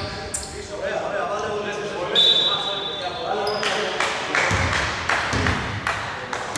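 Echoing sounds of a basketball game in a large indoor hall: players' voices, one short, steady referee's whistle about two seconds in, and a basketball knocking on the hardwood floor in the last couple of seconds.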